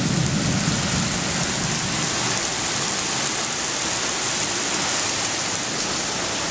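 Rain falling steadily, a dense even hiss, with a low rumble in the first couple of seconds.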